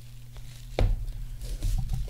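A card box or pack being handled on a table, with one dull knock a little under a second in, over a steady low electrical hum.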